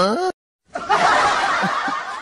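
A brief pitched sound gliding upward at the very start, then a burst of laughter from about half a second in that slowly dies away.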